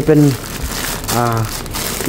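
Thin plastic carrier bag crinkling and rustling as a hand grips and handles it.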